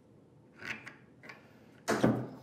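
A few light clicks and handling sounds of small hardware and hand tools at a wooden workbench, then a sharper knock just before the end.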